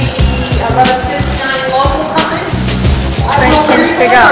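Thin plastic bags crinkling and rustling as a new mouthguard in its plastic case is unwrapped and handled, over background music.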